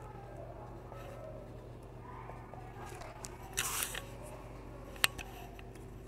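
Pencil-and-paper writing sounds over a steady room hum: a short scratchy rustle a little past halfway, then a single sharp click about five seconds in.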